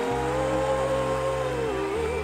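A female voice holding one long high sung note over a sustained low synth chord, the note wavering slightly near the end.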